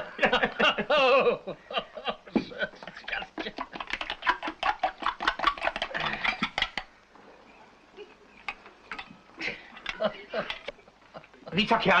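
Two men laughing heartily, their laughter dying down to quieter chuckles and murmurs in the second half.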